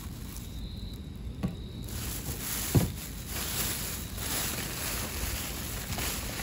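Plastic trash bags rustling as items are handled, with a light knock about a second and a half in and a sharper click near three seconds, over a steady low rumble.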